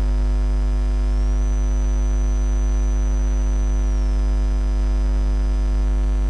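Loud steady electrical mains hum with a long stack of overtones. A faint high whine steps up in pitch about a second in and back down about four seconds in.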